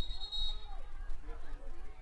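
A referee's whistle blown once, a short steady high blast at the start, followed by faint shouting of players on the field.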